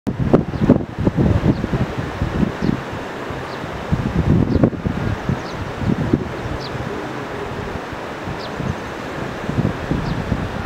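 Wind buffeting the microphone outdoors, in irregular low gusts that are heaviest in the first half and ease to a steadier rush after about seven seconds.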